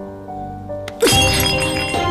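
A bowl of medicine knocked away and smashing, one sudden shatter about a second in, over background music.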